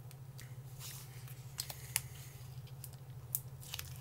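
A few faint crinkles and clicks from a plastic meat-stick wrapper being handled and opened, over a steady low hum.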